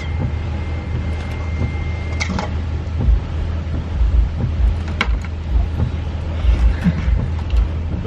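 Car engine running, heard from inside the cabin as a steady low hum. A thin steady high tone sounds for the first two seconds or so, there are a couple of sharp clicks, and low thumps fill the second half.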